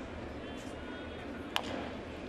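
Ballpark crowd murmuring at a low level, with a single sharp crack of a wooden bat hitting a pitched baseball about one and a half seconds in: the ball is chopped into the ground.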